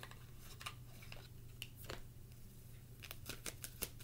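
Faint, irregular clicks and light rustling of cards being handled, with a quick run of clicks near the end, over a steady low hum.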